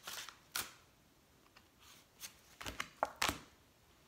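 A deck of tarot cards being shuffled by hand: a string of short, soft card snaps and flicks, with quiet gaps between and several close together in the second half.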